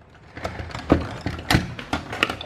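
A few short knocks and taps as a mains plug is pulled out of a power-strip socket and items are handled on a workbench. The sharpest knock comes about one and a half seconds in.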